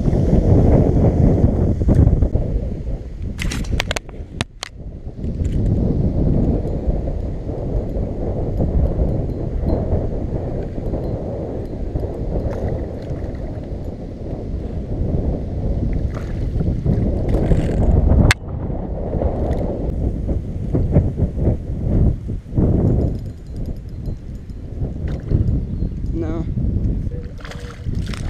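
Wind buffeting an action-camera microphone in a steady low rumble, with a few sharp clicks.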